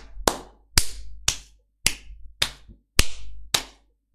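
Seven sharp hand claps in an even rhythm, about two a second.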